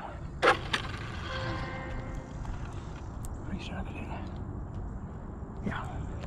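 Faint steady whine from an RC speed-run car's Castle 1721 2400kv brushless motor as the car creeps along at low throttle, heard for a couple of seconds, with a sharp click about half a second in and a low steady rumble underneath.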